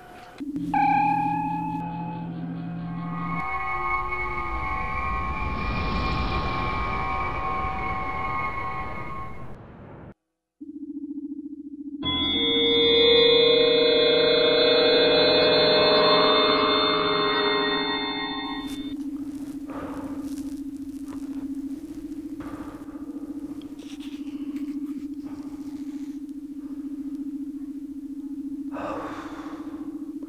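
Star Trek–style transporter beaming sound effect: a shimmering chord of steady high tones swells and fades, and after about a second of silence a second, louder shimmer follows. A low steady hum runs underneath from then on.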